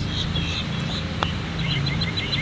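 Small birds chirping in short repeated notes over a steady low hum, with one light click about a second in.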